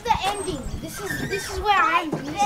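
Children's voices, unclear words and excited calling out, with a high rising-and-falling cry near the end and a single knock just after the start.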